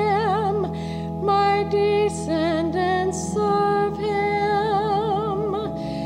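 A woman cantor singing the responsorial psalm with a wide vibrato, phrase by phrase, over steady held organ chords.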